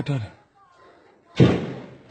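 A single loud, sudden bang about one and a half seconds in, dying away over about half a second, following a man's last word of speech.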